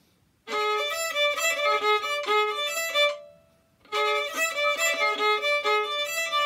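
Violin playing one fast measure of sixteenth notes twice over, each run lasting about two and a half seconds with a short pause between. This is the whole measure put back together in practice, after rehearsing it one beat at a time.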